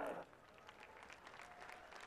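Faint applause from the crowd.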